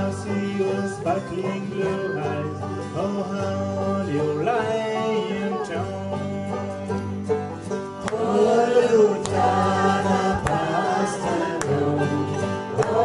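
Group of voices singing a folk song to banjo and acoustic guitar accompaniment, getting louder about eight seconds in.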